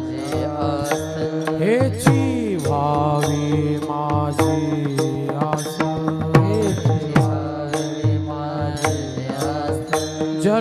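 Marathi devotional kirtan singing: a male voice chants with long sliding notes over a steady drone. Small brass hand cymbals (taal) are struck in a regular rhythm.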